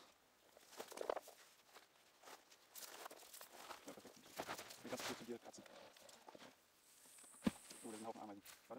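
A black plastic tub of soil being tipped upside down on grass: scraping plastic and rustling dry potato stalks, then one dull thud about half a second before the end as the tub lands and its soil drops out as a block.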